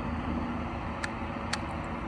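Steady low background rumble with a faint hum, broken by two light clicks about half a second apart midway through.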